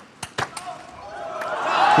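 A table tennis ball clicking sharply off bat and table a couple of times in the first half-second of a rally's end, then crowd cheering that swells over the last second.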